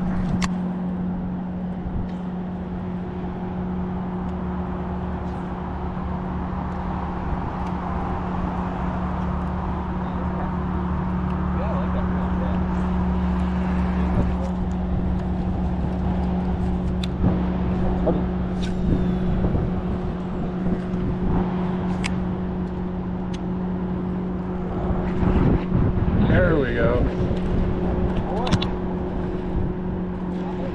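Boat motor humming steadily at one constant pitch, with water and wind noise around it and a few faint clicks.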